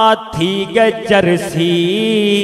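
A man chanting Saraiki verse in a drawn-out, sing-song voice into a microphone, with a short break just after the start and then long held notes.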